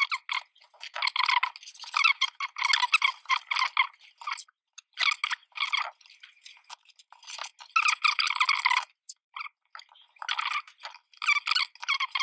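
Fingers rubbing and pressing black construction tape down onto the edges of a card photo frame: scratchy rubbing in irregular bursts, with short pauses.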